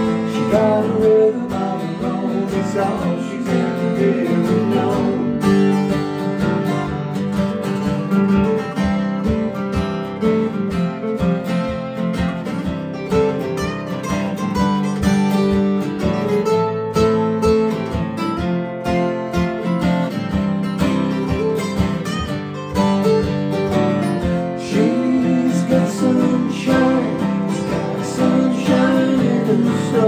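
Two acoustic guitars strumming chords together in a steady acoustic song. A man's singing voice comes in over them briefly at the start and again near the end, with guitar only in between.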